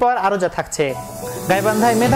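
A male newsreader's voice ends a sentence in Bengali, followed by a brief hissing whoosh transition effect; news background music then comes in and gets louder about halfway through.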